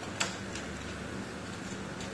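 Vegetable pakoras deep-frying in a wok of hot oil, with a steady sizzle. A single sharp click of the metal tongs against the pan comes just after the start, followed by a few faint ticks.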